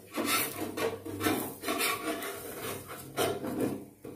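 Spatula scraping around and under the edge of a crisp dosa in a non-stick pan, loosening it from the pan: a run of short scraping strokes.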